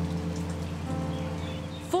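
Steady rain falling into a puddle on wet ground, with low sustained music notes underneath.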